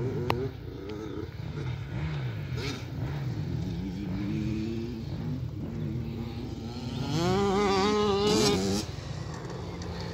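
Motocross dirt bike engines revving up and down as they ride the track, the pitch climbing and falling with each throttle and gear change. One bike is louder between about seven and nine seconds in, its revs wavering, then drops away suddenly.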